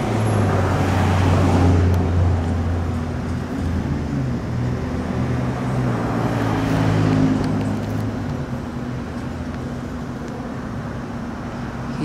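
Road traffic: motor vehicles running by on the street, loudest about a second or two in and again around six to seven seconds, then easing off.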